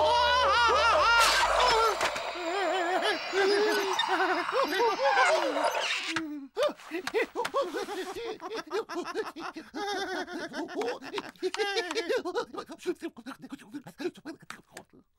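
Cartoon penguin characters laughing and babbling in nonsense penguin talk, over the tail of background music that ends within the first few seconds. After a brief pause about six seconds in, the voices break into many short, quick giggles.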